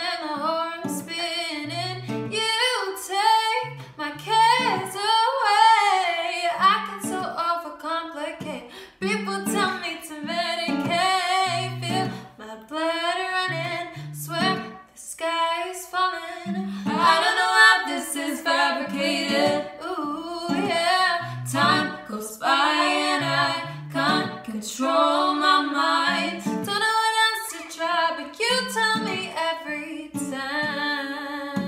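Female voices singing a pop song over a strummed acoustic guitar, with low bass notes from the guitar repeating under the melody.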